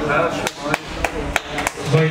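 A run of about five sharp slaps, roughly three a second, with shouting voices underneath.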